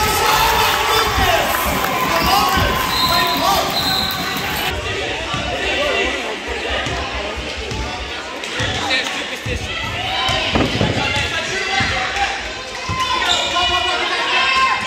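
A basketball being dribbled on a hardwood gym floor, a run of repeated thumps, under the chatter of spectators and players.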